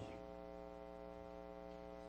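Faint, steady electrical mains hum with a buzzy stack of overtones.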